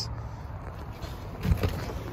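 Quiet low background hum, then a few soft knocks and bumps about one and a half seconds in, as of someone moving into the driver's seat of a minivan.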